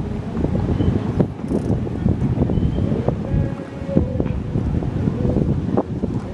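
Wind buffeting the camera microphone in uneven gusts, with a few short knocks and a faint steady hum in the middle.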